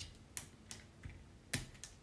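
Small Cobi plastic building-block parts clicking as a pilot figure and its hose are pulled apart by hand: a handful of faint, separate clicks.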